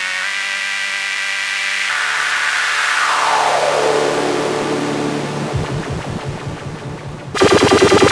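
ElectroComp EML 101 analog synthesizer sounding a steady buzzy tone that turns into a long falling sweep. The sweep gives way to a slow, low rattle of pulses. Near the end a much louder, fast-pulsing rattle cuts in suddenly.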